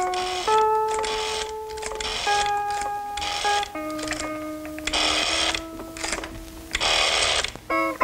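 Payphone rotary dial being dialled: several digits in a row, each a whirring return of the dial lasting under a second, the last two longest, over plucked guitar music.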